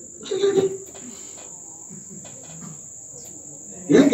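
A steady high-pitched whine holds one even pitch throughout, under a brief spoken word just after the start and a quiet pause with faint voice in the background.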